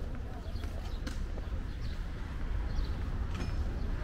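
Outdoor city street ambience: a steady low rumble with faint distant voices and a few light taps.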